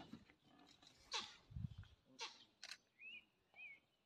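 Short, sharp animal cries, several falling steeply in pitch, with a low thud about halfway through and two brief wavering chirps near the end.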